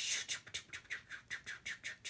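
A rapid, even run of light, sharp clicks, about seven a second.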